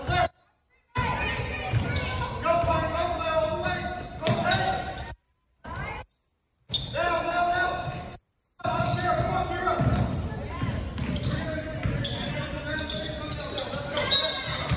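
Basketball game on a hardwood gym floor: ball bouncing and players' feet on the court, with voices shouting and calling out, echoing in a large gym. The sound drops out completely a few times.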